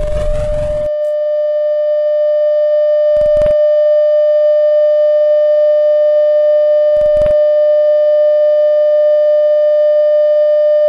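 Steady electronic sign-off tone of a television end-of-transmission, one unwavering mid-pitched note. It starts under a burst of harsh, distorted glitch noise in the first second and is broken by two short crackles about three and seven seconds in.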